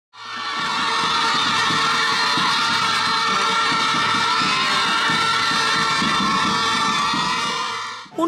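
A crowd of children shouting and cheering together, loud and steady, with music underneath. It fades in at the start and fades out just before the end.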